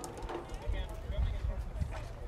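Distant voices of players and spectators calling out across an open ball field, faint and broken, over an irregular low rumble.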